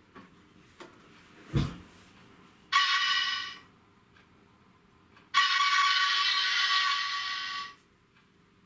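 Hornby TTS sound decoder in a 00 gauge Coronation class model locomotive sounding its steam whistle through the model's small speaker: a short blast, then a longer one of about two and a half seconds. A few faint clicks and a soft thump come before the whistles.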